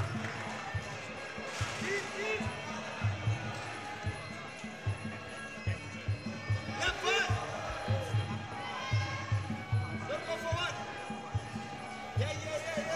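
Traditional Muay Thai fight music (sarama): drums beat a steady quick rhythm of about three strokes a second under a reedy melody that bends up and down in pitch.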